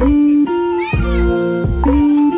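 Background music with a steady beat and held notes, and a short high rising-and-falling sound about a second in.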